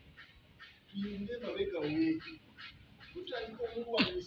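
A man's voice speaking in two short phrases, the first about a second in and the second near the end, with a quiet pause at the start.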